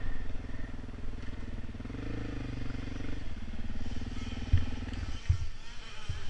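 Off-road vehicle engine running on a dirt trail, revving up about two seconds in and then easing off. Two low thumps come near the end.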